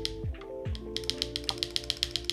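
Rapid keystrokes on a Retro 66 gasket-mount mechanical keyboard with KTT Rose switches, the keys on the right side bottoming out with a loud clack. This is a sign of the board bottoming out on that side without the foam under the PCB. Background music plays under the typing.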